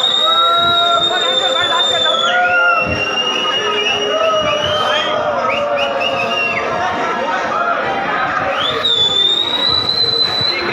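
Shrill, piercing whistles over a party crowd's chatter and music. The first whistle rises and is held for about two seconds, the next drops lower with a few short slides, and another rises near the end.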